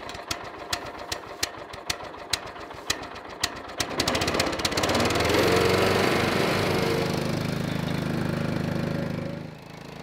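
Small petrol engine of a Ditch Witch walk-behind trencher: a run of clicks that quickens, then about four seconds in the engine starts and runs steadily, dropping off briefly near the end.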